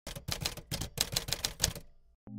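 Typewriter sound effect: a rapid run of a dozen or so sharp key strikes, about six a second, that stops shortly before the end.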